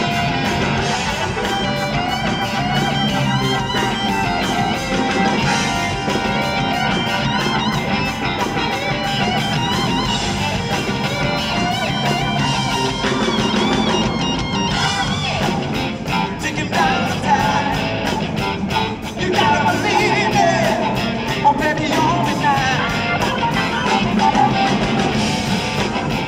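Blues-rock band playing live: lead electric guitar with bent, wavering notes over bass guitar and drums, in an instrumental passage without vocals.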